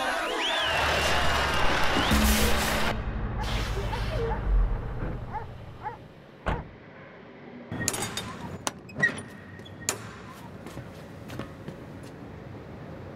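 Party music cuts off into a wavering squeal and a heavy rumble as the truck's cargo trailer lurches hard, flinging the people inside. It settles into a quieter hum, broken by a few sharp knocks and clicks near the end.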